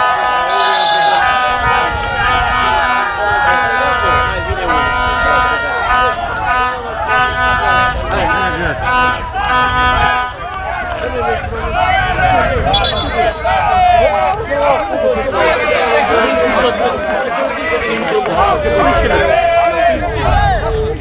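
Men's voices shouting and cheering together in celebration of a goal at a small football ground, several voices overlapping without clear words. Through the first half there is also a held, steady chord-like tone under the voices.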